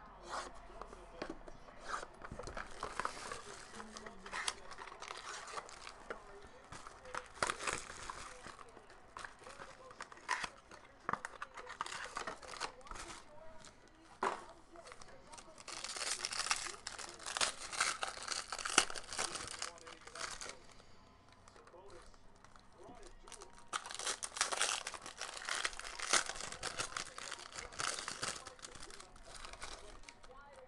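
Plastic wrap on a trading-card box slit with a small blade, then cellophane and foil pack wrappers crinkled and torn open by hand, with scattered clicks from handling. The crinkling is loudest in two long stretches, about halfway through and again near the end.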